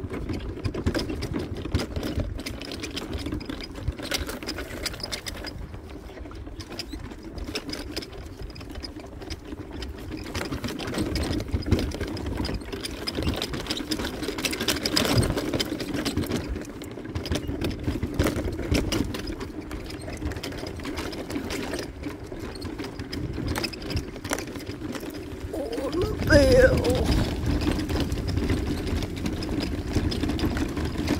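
Mobility scooter's electric drive motor whining steadily as the scooter rolls over grass, with many small clicks and rattles from the body.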